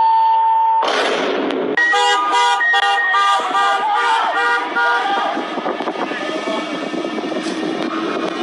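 A steady beep, then a vehicle horn honking in a run of short blasts over street noise.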